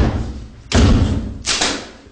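A series of loud thuds: one at the very start, then two more about three-quarters of a second apart, each dying away quickly.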